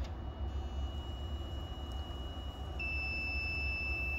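UNI-T UT501A insulation resistance tester sounding a steady electronic beep while its TEST button is held and it applies the test voltage. About three seconds in, the tone steps to a slightly lower, stronger pitch and carries on. The reading is 0.00, a straight path to earth: the compressor winding has failed to ground. A low steady rumble sits underneath.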